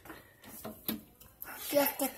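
Quiet, broken-off speech with a single sharp click a little before the middle.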